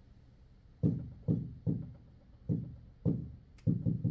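Fingertip taps on a large interactive touchscreen display, about seven dull knocks on the glass panel starting about a second in, the last few coming faster.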